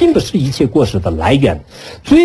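A man's voice lecturing in Chinese, pausing briefly near the end.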